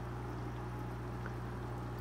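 Small aquarium's pump running steadily: a low electrical hum with a faint trickle of water.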